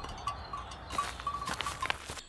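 Faint sound effects of a lone sheep, over a steady high chirping of insects, with a few soft rustles near the end.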